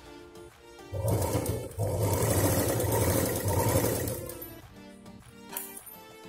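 Sewing machine stitching fabric, running in two stretches: a short one about a second in, then a longer one that stops about four seconds in.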